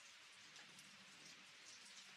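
Near silence: a faint steady hiss with a few soft scattered ticks.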